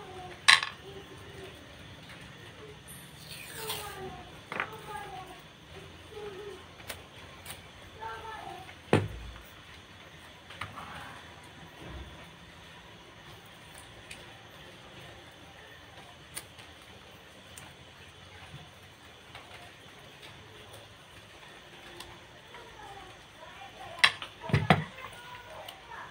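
Occasional sharp clicks and knocks from small parts being handled on the plastic body of an electronic bathroom scale: one loud click about half a second in, another around nine seconds, and a quick cluster near the end. Faint voices in the background.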